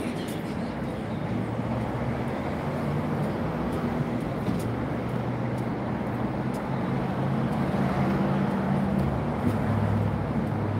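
Street traffic: a motor vehicle's engine hum with low, steady tones that shift in pitch, over a wash of road noise, getting a little louder in the second half.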